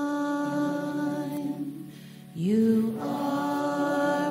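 A worship team's voices sing a slow hymn in long held notes. The first note fades out about a second in, and a new one swells in a little past the halfway point.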